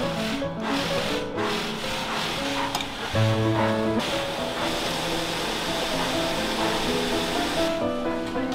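Background music: a melody of held notes that change every half second or so, over a light hiss-like texture.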